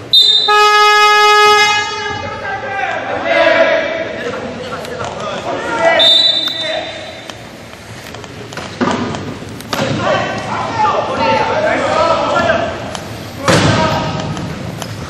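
Arena horn buzzer sounding one steady, loud blast of about a second and a half, followed by voices on court and a short high referee's whistle about six seconds in. A loud bang comes near the end.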